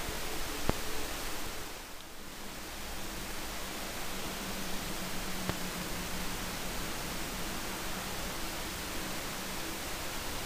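Steady hiss of room tone and microphone noise, with a faint low hum and two light clicks.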